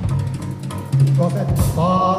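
Live improvised jazz from a trio of piano, wind instrument and drum kit. Bass drum hits come at the start and again about halfway through, the second with a cymbal crash, over a held low tone. Near the end a pitched line rises.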